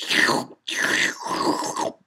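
A voice saying "shloop, shloop" in imitation of slurping soup: a short first "shloop", then a longer drawn-out second one.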